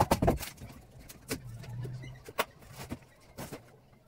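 Hammer knocking and prying at a plywood cabinet shelf: a quick run of strikes at the start, then a few scattered single knocks. A low hum rises and fades about a second in.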